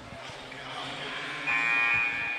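Basketball scoreboard horn sounding one short, steady buzz of about half a second, starting about one and a half seconds in, over the murmur of the gym.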